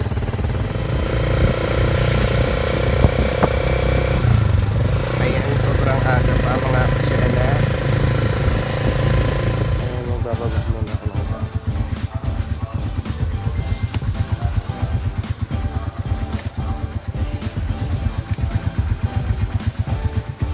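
Motorcycle tricycle engine running steadily as it rides, with music over it. About halfway through the steady drone drops away, leaving a pulsing beat.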